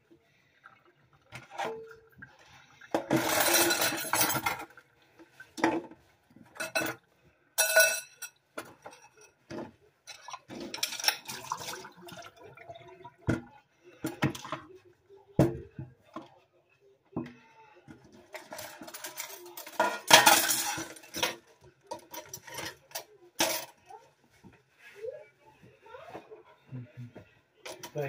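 Dishes being washed by hand: plates and cutlery clinking and knocking against each other, with two short spells of louder running water, one a few seconds in and one about two-thirds of the way through.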